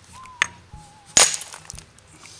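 A hard stone hammerstone striking a flint block in hard-hammer knapping: a light tap about half a second in, then one sharp, loud crack a little past a second in as a large, thick flake is struck off.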